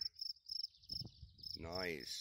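Crickets chirping, a short high chirp repeating steadily about three times a second.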